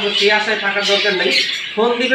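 Mostly a man speaking, with caged pet birds chirping and squawking behind his voice.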